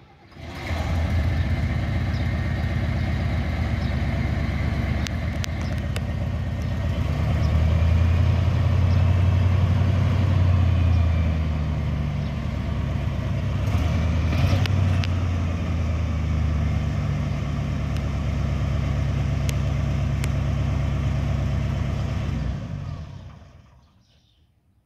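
Chevrolet C-series grain truck engine starts about half a second in and runs. It is revved up for a few seconds in the middle and is shut off near the end.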